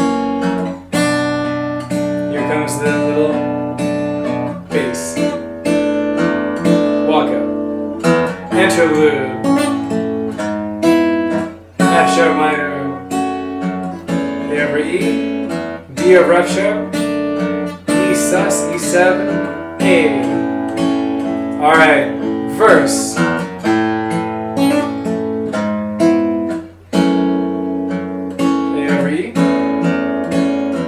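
Steel-string acoustic guitar fingerpicked, playing a slow chord progression (Bm7, E7sus4, E/G#, F#m, A/E, D/F#) with bass notes and melody picked out by the fingers, with a voice joining in at times.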